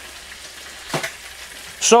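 Eggs, sausages, bacon, tomatoes and mushrooms frying together in one pan, giving a faint steady sizzle. One short, sharp crackle comes about a second in.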